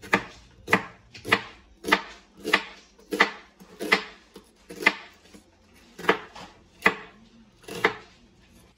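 Kitchen knife slicing onion halves on a wooden cutting board: about a dozen sharp, even chops, roughly one every two-thirds of a second, with a short pause a little past the middle.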